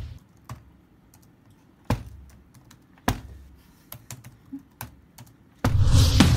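Typing on a computer keyboard: scattered single key clicks, with two louder strikes about two and three seconds in. Near the end a much louder, busier sound starts suddenly.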